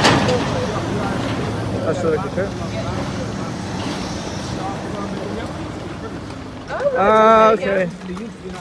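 Street traffic with a heavy truck's engine running, its hum fading over the first few seconds. Near the end comes a loud pitched call lasting under a second.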